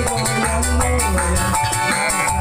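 Live organ tunggal music: a single arranger keyboard supplying the whole band, with heavy bass and a steady shaker-and-drum beat, played loud through PA speakers.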